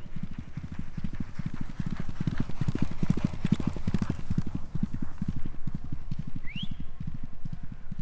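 Hoofbeats of a ridden racehorse galloping on turf: a fast, even run of dull thuds, loudest around three to four seconds in as the horse passes close by.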